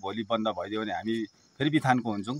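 A man speaking Nepali, with a short pause in the middle. Behind him runs a faint, steady, high-pitched chirr of insects, typical of crickets.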